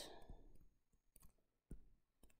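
Near silence with a few faint clicks and taps of a stylus on a tablet screen while numbers are handwritten; the clearest tap comes near the end.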